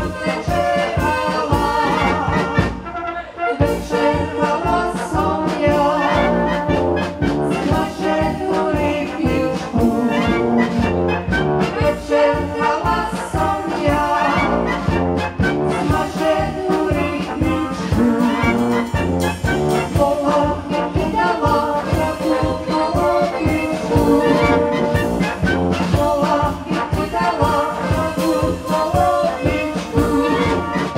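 Brass band playing, trumpets and flugelhorns leading, with a brief break about three seconds in.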